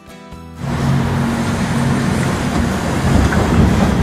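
Rock pouring from an electric rope shovel's dipper into a haul truck's bed: a loud, steady heavy rumble that starts about half a second in, with music underneath.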